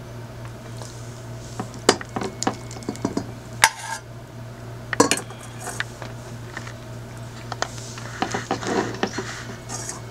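A spoon stirring hot oil into flour in a glass bowl: scattered clinks and taps of the spoon against the glass, with a stretch of rougher scraping near the end as the oil-flour paste is mixed.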